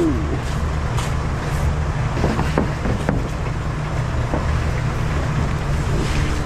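A vehicle engine idling with a steady low hum. A few sharp knocks and scrapes come through as a plywood sheet is slid onto the van's cargo floor.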